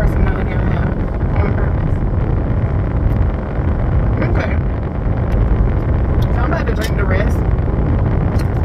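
Steady low rumble inside a car cabin, with a woman's voice speaking in short stretches over it.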